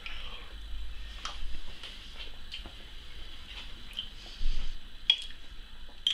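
A man chewing a mouthful of pan-seared hare loin, with a few light clicks of a knife and fork against a china plate.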